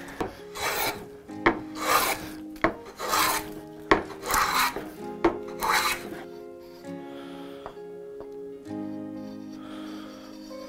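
Hand plane cutting shavings off a hardwood block, about five long rasping strokes roughly a second apart, with a sharp click between strokes; the strokes stop about six seconds in, leaving only background music.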